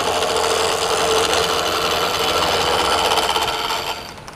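A hand-held turning chisel cutting a wood blank spinning on a wood lathe: a steady scraping hiss of the cut over the hum of the running lathe, while the blank is turned down to a round cylinder. The cutting eases off just before the end.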